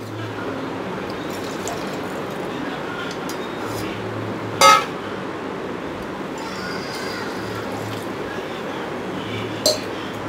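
Liquid being poured into an aluminium pressure cooker of rice, a steady pouring sound, with two sharp metal clinks: a loud one about halfway through and a smaller one near the end.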